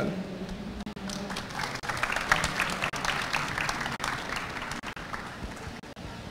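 Audience applauding, a dense patter of many hands clapping that swells about two seconds in and thins out toward the end.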